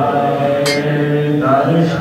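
A man's voice reciting Gurbani from the Guru Granth Sahib in a slow chant, holding long steady notes. This is the recitation of the day's Hukamnama.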